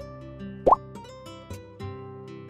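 Background music with steady notes, and a short pop sound effect that rises quickly in pitch about two-thirds of a second in.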